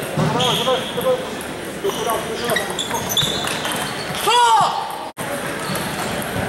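Table tennis ball clicking sharply off bats and the table in a rally, with busy hall noise of other players and voices. A short loud squeal, like a shoe squeaking on the gym floor, stands out about four seconds in.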